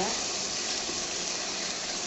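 Sliced pork sizzling in hot oil in a nonstick frying pan as it is stir-fried with wooden chopsticks: a steady, even sizzle.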